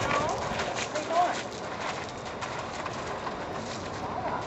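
A Lusitano mare's hooves stepping on gravel as she walks and turns, with several footfalls in the first couple of seconds.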